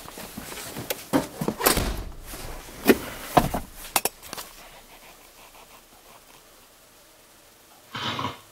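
Handling noise inside a car's cabin: rustling, a few sharp clicks and soft knocks as someone moves about between the seats. It dies away to quiet after about four seconds.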